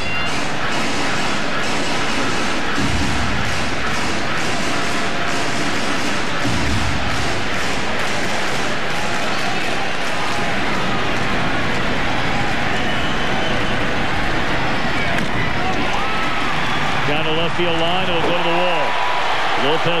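Large ballpark crowd noise as heard on a TV broadcast: a steady, dense din of many voices.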